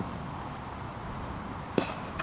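A cricket bat striking the ball: one sharp crack near the end, over steady low outdoor background noise.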